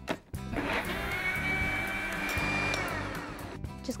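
Countertop blender running, pureeing boiled potatoes and roasted red bell pepper into a thick soup. The motor whine climbs as it spins up about half a second in, holds steady, then winds down and stops shortly before the end.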